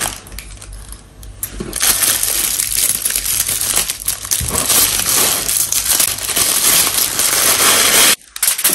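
Plastic bag wrapper crinkling as it is handled and opened, faint at first and then loud and continuous from about two seconds in.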